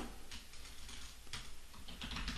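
A few faint, sparse clicks from a computer keyboard, over a low steady hum.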